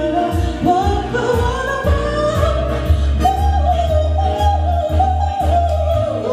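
A woman singing a slow, gliding melody into a microphone over amplified musical accompaniment with a strong, deep bass line.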